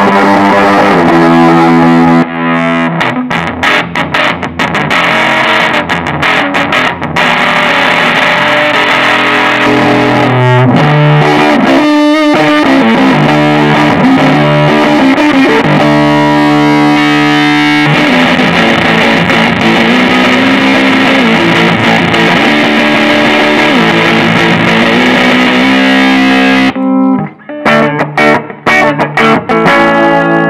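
Electric guitar played through an Electro-Harmonix Big Muff Pi fuzz pedal, its distorted fuzz tone changing character as the pedal steps through stored MIDI presets. Near the end the pedal switches to true bypass on its relay and the guitar is heard without the fuzz.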